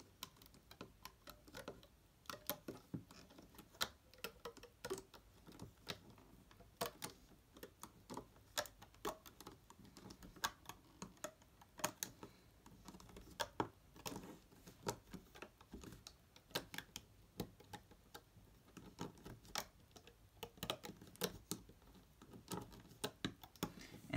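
Irregular light clicks and taps of a plastic looming hook against the pegs of a plastic Rainbow Loom as rubber bands are lifted and looped over.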